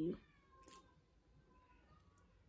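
A faint, drawn-out animal cry that wavers in pitch for about a second, with a second shorter one near the end.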